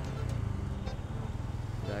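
Motorcycle engine running at low speed in slow traffic, heard from the rider's seat as a steady low rumble.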